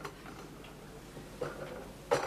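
Quiet room tone with faint, light ticking.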